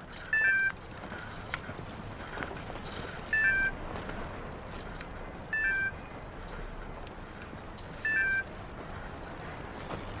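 Phone delivery-app notification chime, a short two-note falling electronic tone, sounding four times a few seconds apart, each one the alert for a new delivery order. Under it runs a steady outdoor background noise.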